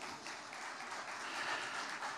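Audience applauding, a dense, even patter of many hands clapping.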